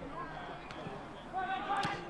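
Faint voices of players and spectators around an outdoor football pitch, with one light knock a little under a second in and a clearer call from a player near the end.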